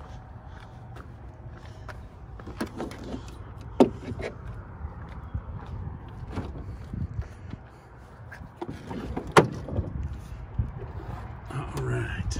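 Two sharp clunks, about four seconds in and again about nine seconds in, with lighter knocks between, as a 2008 Hummer H2's hood is unlatched and lifted open, over a low steady rumble.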